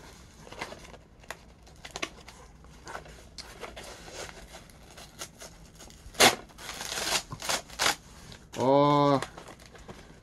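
Corrugated cardboard mailer being torn open by hand: scattered crackling and rustling, then a sharp rip about six seconds in and a couple of seconds of tearing along the tear strip. A short voiced sound follows near the end.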